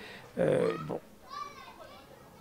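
Quieter background voices in a pause of the main speech: a short low murmur about half a second in, then a fainter, higher voice a second in.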